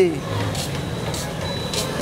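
Steady noise of passing road traffic, an even rush with a low rumble, with a faint high steady tone.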